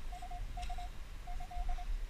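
Minelab Equinox 600 metal detector giving short, steady mid-pitched beeps in three quick clusters of three or four, signalling a target in the sand that turns out to be a dime rather than the aluminium bottle cap it was taken for.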